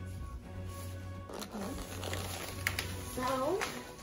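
Background music, with a voice sliding up and down in pitch near the end and a few sharp clicks around the middle.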